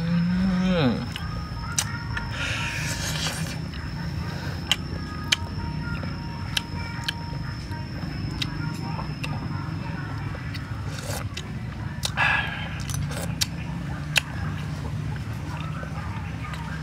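Eating sounds: scattered sharp clicks of a metal spoon and chopsticks and two short slurps, over steady background music. A loud low sound falls in pitch at the very start.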